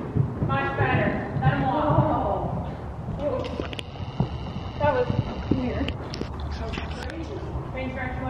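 Hoofbeats of a horse cantering on soft arena sand footing, muffled thuds as it lands from a small jump and carries on, with indistinct voices over it.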